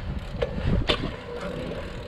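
Steady low rumble of a bicycle being ridden on asphalt, wind on the microphone mixed with tyre noise, with a couple of short sharp clicks about half a second and a second in.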